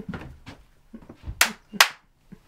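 A woman laughing breathlessly in short gasping bursts, faint at first, with two loud gasps near the end.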